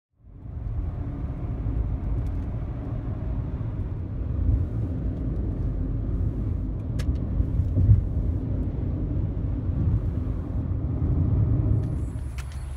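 Steady low rumble of a car driving at freeway speed, heard from inside the cabin: road and engine noise, with a light click about seven seconds in.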